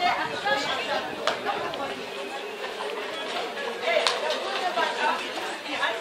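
Overlapping chatter of a group of teenagers all talking at once, with no single voice standing out. It cuts off abruptly at the end.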